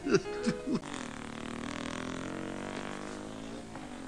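A brief burst of voice, then a steady droning tone with many overtones, held for about three seconds and fading out just before a sharp hiss that follows.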